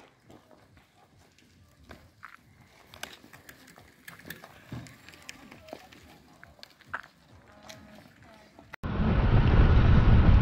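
Faint voices and scattered clicks and knocks at a cycling rest stop. Near the end it cuts suddenly to loud, steady wind noise on the microphone and road rumble from a bicycle riding on open road.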